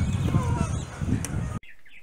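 Wind buffeting a phone microphone in a loud, low, uneven rumble, with faint bird chirps above it. The outdoor sound cuts off abruptly near the end.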